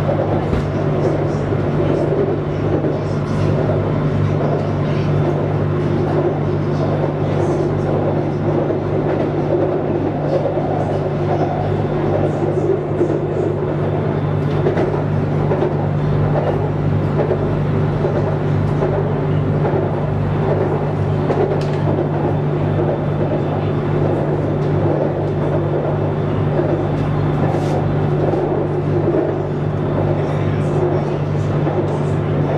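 BTS Skytrain car heard from inside while running along the elevated track: a steady rumble of wheels and running gear with a constant low drone under it.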